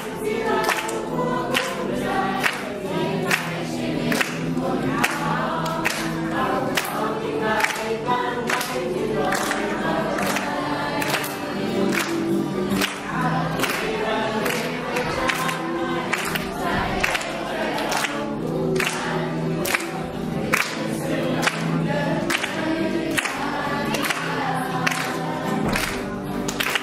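A group of children singing in chorus over recorded music with a steady beat, about two beats a second.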